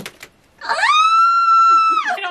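A woman's long, high-pitched scream of frustration, "Ah!", rising quickly in pitch and then held steady. Two short clicks come just before it.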